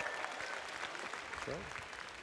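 Audience applause, a steady patter of many hands that slowly fades away.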